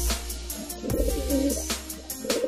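Background music with a steady bass line, with a domestic pigeon cooing over it.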